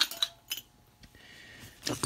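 A few light metallic clinks in the first half-second from seat belt buckle and latch-plate hardware being handled, then only faint background.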